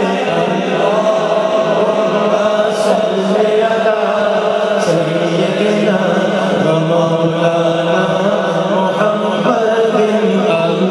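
Several male voices chanting a devotional refrain together, sustained and steady, amplified through a PA system in a large hall.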